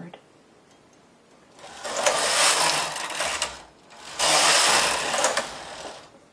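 Carriage of a Studio 860 mid-gauge knitting machine pushed across the needle bed twice, once each way, knitting rows. Each pass is a steady mechanical rush lasting about two seconds, with a short gap between the passes.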